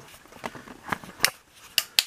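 A few sharp, irregular clicks, with three close together in the last second and the loudest right at the end.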